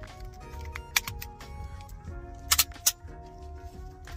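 Background music with a steady beat, over which a folding phone holder's hinges give a few sharp clicks as it is folded by hand: two about a second in and three more in quick succession just past the halfway point.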